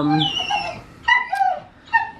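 Great Dane whining in a couple of short, high-pitched whimpers.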